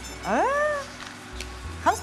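A person's voice: one drawn-out exclamation, high and sliding steeply up in pitch and then easing down, about half a second long. Faint background music runs under it.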